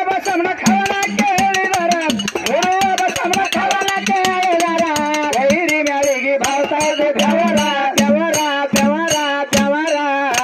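A male voice singing a North Karnataka dollina pada folk song through a microphone, long held notes bending up and down, with small hand cymbals clashing in a quick steady beat.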